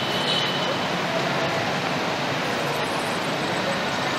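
Steady outdoor background noise, an even wash like wind on the microphone, with faint distant voices. A brief high tone sounds in the first second.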